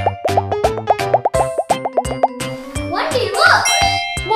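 A rapid run of cartoon bubble-pop sound effects, about five short bloops a second, over upbeat children's background music. The pops go with pressing the bubbles of a silicone pop-it fidget toy.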